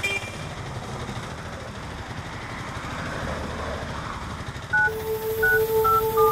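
Auto-rickshaw engine and road noise, a steady low rumble that swells slightly a little after the middle. Near the end, music with held tones comes in and becomes the loudest sound.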